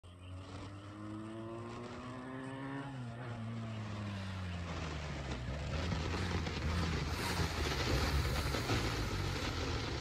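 Benelli TNT 300 motorcycle's parallel-twin engine as the bike rides up toward the listener. The engine pitch rises for about three seconds under acceleration, then drops, followed by a louder, steady low rumble as the bike comes close.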